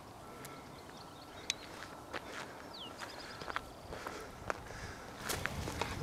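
Footsteps of a hiker on a trail: scattered soft steps and crunches, about one a second, over a quiet outdoor background.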